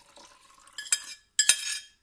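A metal spoon striking and scraping a stainless steel saucepan and pitcher: two ringing clinks, the first about a second in and a louder one half a second later, after a faint trickle of milk being poured.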